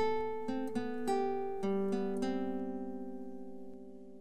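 Background music: a guitar plucks about six notes in the first two seconds, then lets them ring and fade away.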